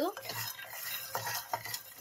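Wooden spatula stirring peanuts, cashews and coriander seeds roasting in a metal pan: an irregular rattle and scrape of the nuts and spatula against the pan, with a few sharper clicks about a second in.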